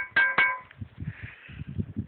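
A steel frying pan knocked twice in quick succession by a revolver barrel, each knock ringing with a clear bell-like tone. Low rustling and handling noise follow.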